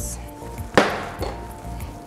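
Background music with one sharp knock of a utensil against the stainless steel mixing bowl of batter, about three quarters of a second in.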